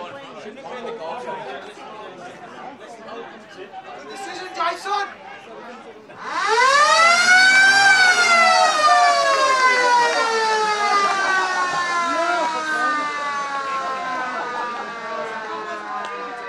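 Ground siren at an Australian rules football ground, sounding once: a long loud wail that starts about six seconds in, rises in pitch for about two seconds, then slowly falls away. This is the siren that ends the quarter. Before it, spectators are chatting and calling out.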